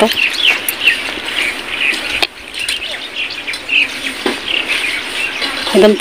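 Small birds chirping outdoors: a busy, continuous run of short, quick, high chirps.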